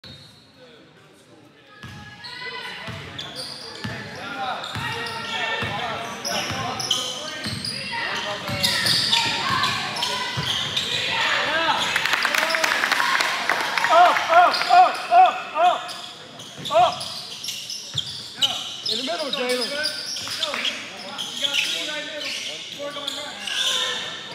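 Basketball game in a gym: spectators and players talking and shouting over one another, with the ball bouncing on the court. Quiet for about the first two seconds, then the crowd noise builds to its loudest around the middle.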